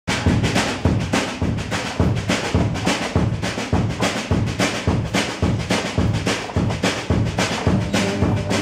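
Live acoustic band playing an instrumental intro: a steady, quick drum beat under strummed and picked banjo and acoustic guitar.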